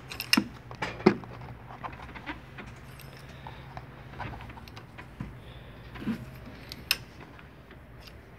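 Scattered metallic clinks and taps from a steel sliding T-bar handle and extension bars as the oil filter is being unscrewed, the sharpest about a second in and again near the end, over a faint steady low hum.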